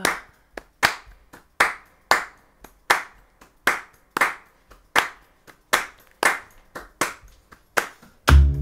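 A woman clapping her hands in a steady rhythm to keep the beat at the start of an acoustic song: about two strong claps a second with softer claps falling between them.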